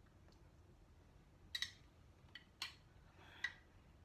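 A spoon clinking lightly against a bowl as chopped tomatoes are spooned out: four small, ringing clicks in the second half.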